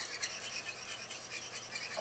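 A pen scribbling rapidly back and forth on an interactive whiteboard, colouring in an area: a quick run of short, scratchy rubbing strokes.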